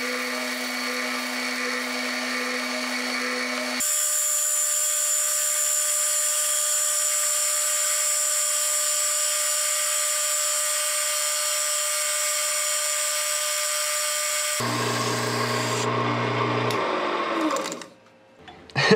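Metal lathe turning a hardwood handle blank with a carbide cutting tool: a steady motor hum, changing abruptly about four seconds in to a steady high hiss of the cut. The hum comes back a few seconds before the end and dies away as the lathe stops.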